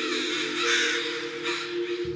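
A flock of American crows cawing all at once, many harsh calls overlapping into one continuous noisy din: crows scolding and mobbing a perceived threat. A low held musical note runs underneath.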